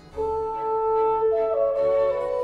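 Background instrumental music in a classical style: a melody of long held notes that steps in pitch a few times.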